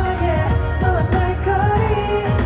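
A male singer's held, gliding vocal line in a live pop song, over a bed of acoustic guitar and a light drum beat.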